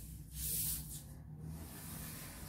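A large sheet of pattern paper sliding and rustling on a wooden table as it is folded and pressed flat by hand: one brief swish about half a second in, then a faint rustle.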